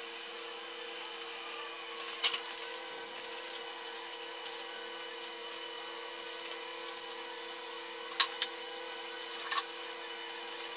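Aerosol spray paint can hissing steadily as paint is sprayed onto grille pieces, with a steady hum underneath and a few sharp clicks.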